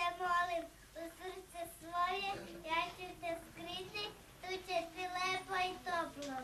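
Children singing a song in short, held phrases, with no instruments.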